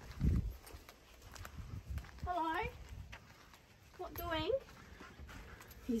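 A dog left alone shut inside a caravan barking, two wavering calls about two and four seconds in; he doesn't like being on his own.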